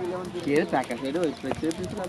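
People talking, with sharp clicks from a burning pile of dry twigs crackling.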